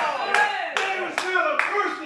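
Hand claps in a steady rhythm, four about 0.4 s apart, over a man's voice speaking.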